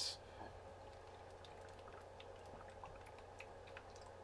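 Faint sipping and swallowing of coconut water from a paper carton: a few soft, scattered small clicks over a low steady hum.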